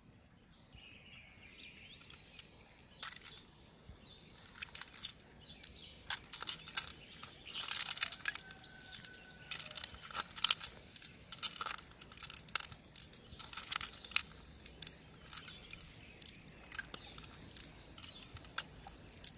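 Quick, irregular wet clicks and squelches as fingers work through the soft flesh of a large freshwater mussel and small round beads click together in the palm. The clicks are sparse at first and come thick and fast from about five seconds in.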